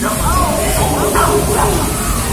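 Several short yelping, whining animal cries, each rising and falling in pitch, played from a dark ride's soundtrack over background music.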